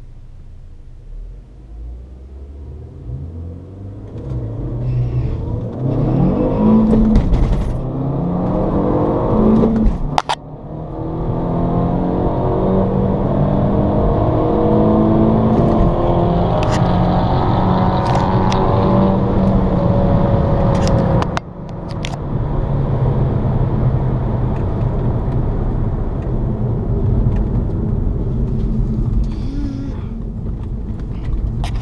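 A VW GTI's turbocharged 1.8-litre four-cylinder with an aftermarket intake, heard from inside the cabin, pulls hard from the line. The revs climb through the gears, with sharp breaks at gear changes about ten seconds in and again about twenty-one seconds in, and the engine stays loud through to the end.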